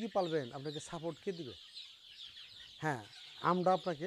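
A crowded flock of young deshi chicks peeping continuously, a dense chorus of many short, high chirps overlapping without a break.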